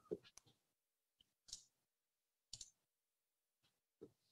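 Near silence broken by a few faint, scattered clicks from a computer as the shared document is advanced to the next page.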